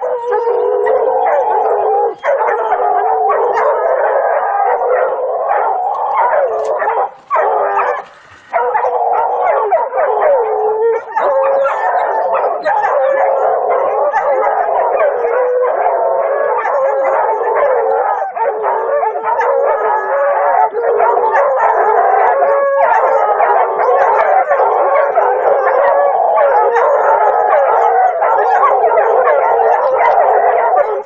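A pack of hunting hounds baying and howling continuously at a big cat treed above them, many voices overlapping, breaking off briefly about seven seconds in.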